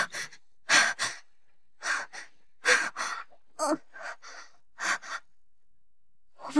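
A young woman gasping and panting in fright: quick, sharp breaths in pairs about once a second, a few catching in her voice.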